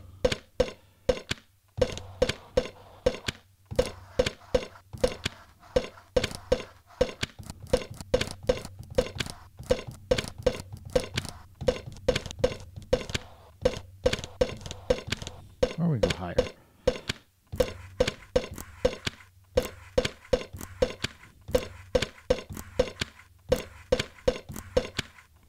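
Roland SP-404 MkII sampler playing layered, resampled percussive loops, one copy pitched down six semitones: a fast, uneven run of sharp hits, several a second, each with a short ring, over a steady low drone.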